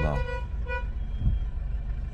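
Low, steady rumble of a car's engine and road noise heard from inside the cabin, with two short car-horn beeps near the start and a single thump just after a second in.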